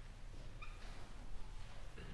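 Faint shuffling as performers settle onto chairs on a wooden stage, with one brief high squeak a little over half a second in, over the low hum of the hall.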